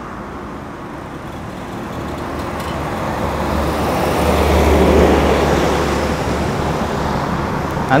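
A motor vehicle passing on a nearby road: engine and tyre noise swells to its loudest about five seconds in, with a low engine hum under it, then fades away.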